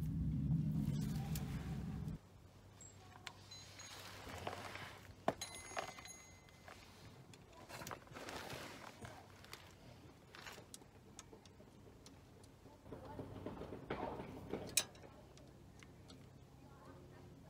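Scattered clicks and handling noise from a ratchet wrench turning the sump pan bolts of a Mercedes 722.9 automatic gearbox a further 180 degrees, after a first pass to 4 Nm. A low hum fills the first two seconds and then cuts off abruptly.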